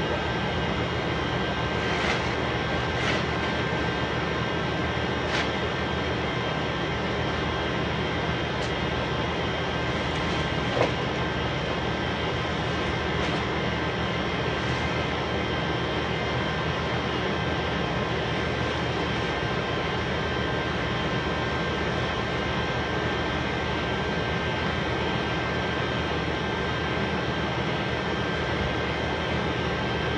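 A steady, loud mechanical drone with a thin high whine running through it, unchanging throughout, with a few brief clicks and rustles of plastic bin bags being handled.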